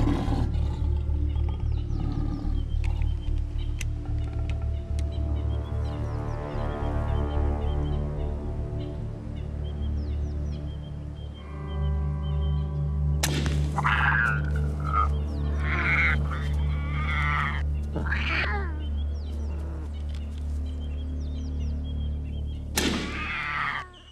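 Tense documentary score with a steady low drone, over which an angry leopard snarls several times from about halfway through and once more just before the end, as she reacts to being hit by a dart.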